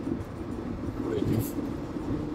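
Steady road and tyre rumble inside the cab of an electric-converted VW T2 bus driving along, with no engine note.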